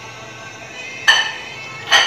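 Faint background music, with two short noisy clinks from an oil bottle being handled and tipped over a frying pan: one about a second in, one near the end.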